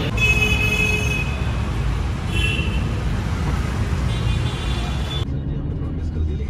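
Loud, steady vehicle rumble with a few short high-pitched tones over it. About five seconds in it cuts abruptly to the duller road noise of a moving car heard from inside the cabin.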